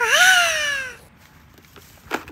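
A single meow-like call that dips, rises, then slides slowly down in pitch, lasting about a second.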